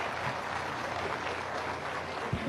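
Audience applauding: a steady wash of many people clapping.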